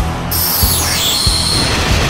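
Intro music with a steady beat. About a third of a second in, a bright, glittering sound effect sweeps downward in pitch over about a second as the channel logo is revealed.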